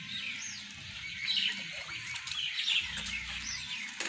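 Small birds chirping outdoors: repeated short, high, sweeping calls.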